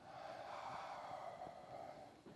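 A person breathing out near the microphone: a soft, steady breathy hiss lasting nearly two seconds.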